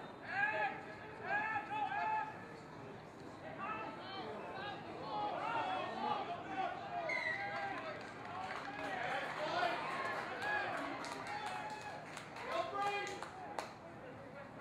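Several voices shouting and calling over one another during a rugby scrum and the scramble at the try line. The voices are densest in the middle, and there are a few sharp clicks near the end.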